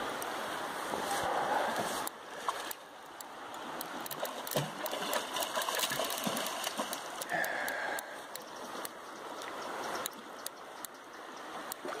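River water rushing steadily past a rocky bank, with scattered sharp clicks and knocks through the middle.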